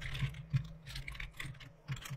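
Computer keyboard being typed on: a quick, uneven run of keystroke clicks.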